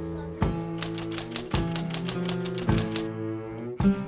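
Background music on acoustic guitar: plucked and strummed chords ringing, with a sharp attack on each new chord.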